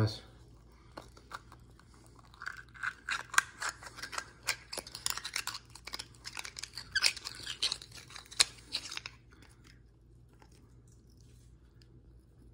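The narrow point of an oyster knife grinds and crunches into an oyster's shell and is twisted to pry it open: a run of irregular crackling clicks and scrapes of shell that stops about nine seconds in. The knife is drilled into the shell because hardly any of the hinge is exposed.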